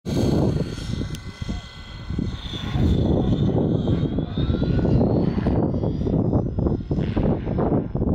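Heavy wind buffeting the microphone in gusts. Under it is the faint high whine of a distant Align T-Rex 550 radio-controlled helicopter's motor and rotors, rising in pitch a couple of seconds in.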